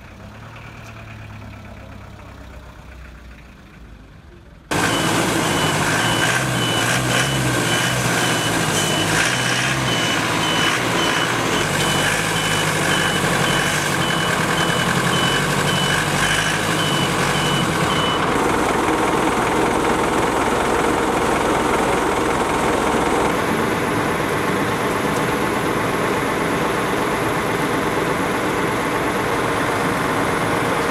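A funeral van's reversing beeper, a high beep repeating about one and a half times a second, over its running engine; it starts suddenly about five seconds in and stops about two-thirds of the way through, while the loud engine and background noise carry on.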